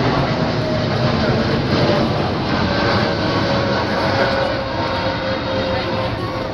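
Jet engines of a twin-engine Boeing 787 airliner roaring as it climbs away after takeoff. A steady rush is laid over a faint whine that slowly drops in pitch as the plane recedes.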